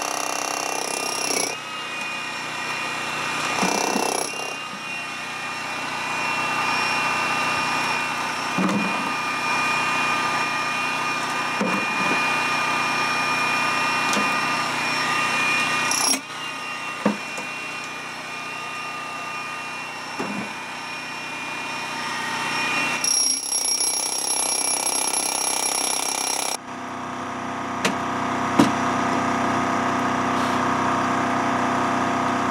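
Hilti electric demolition hammer running steadily as it chisels into a gold-bearing quartz vein in rock, its sound breaking off and changing abruptly several times.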